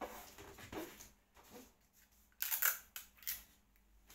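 Gift-wrapping paper rustling and crinkling in a few short bursts as it is handled and folded around a box, the loudest about two and a half seconds in.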